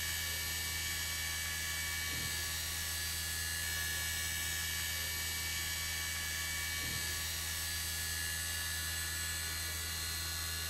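Steady low electrical hum with faint high tones above it, from the running standing-wave apparatus: the string driver and its fluorescent black lights.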